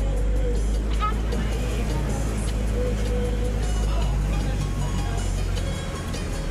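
Steady low rumble of a car's engine and road noise heard from inside the cabin, with music playing over it.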